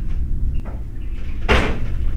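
A toilet cubicle door being pushed shut, with one sharp bang about one and a half seconds in and a softer knock before it. A steady low rumble runs underneath.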